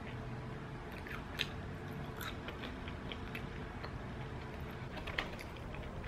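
Quiet chewing of crispy tortilla chips, with scattered short crunches; the sharpest come about a second and a half in and again near the end.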